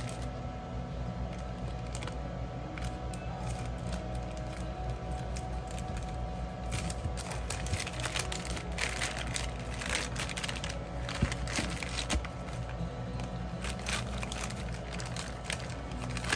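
Black plastic poly mailer crinkling and rustling as it is handled and cut open with small metal scissors, with crackly snips and crinkles coming thick from about halfway through. Soft background music runs underneath.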